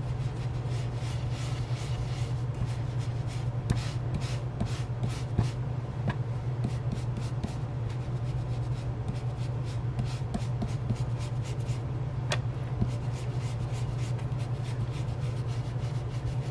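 Ink blending brush rubbing over a paper stencil and cardstock in quick, repeated short strokes, with a steady low hum underneath and a few light clicks.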